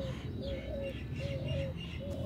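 A dove cooing outdoors: short, low coos, each under half a second, repeated about once a second.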